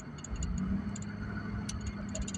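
Car cabin noise while driving: a low rumble and a steady low hum, with a run of light, quick ticks scattered through it.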